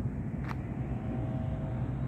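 Low, steady rumble of street traffic, with a single click about half a second in and a faint steady whine joining about a second in.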